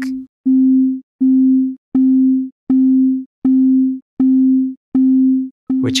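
A low sine-wave test tone plays as repeated notes about half a second long, a little over one per second, through Ableton's Compressor set to an infinite ratio and near-zero attack. From about two seconds in, each note starts with a sharp click. The compressor itself causes the click because its look-ahead is switched off, so it reacts too late for the start of each note.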